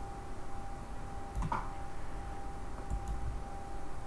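Two soft computer mouse clicks about a second and a half apart, over quiet room tone with a faint steady high-pitched hum.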